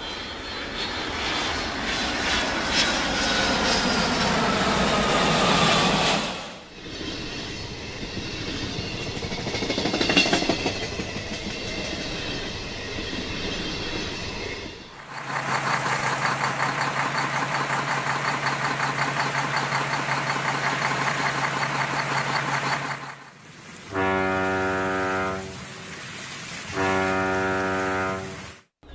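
A large vehicle rumbling past, followed by a horn: one long steady blast lasting several seconds, then two short blasts near the end.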